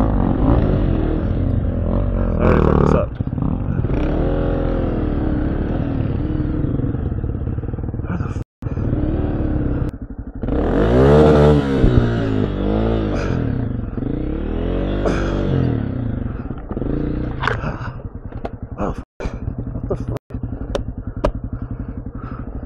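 Honda CRF250F dirt bike's air-cooled single-cylinder four-stroke engine revving up and down in repeated surges as it is ridden over a log and roots, with clattering knocks near the end.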